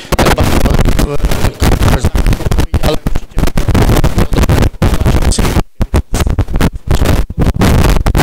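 A man talking close into a handheld microphone, loud and harsh with distortion.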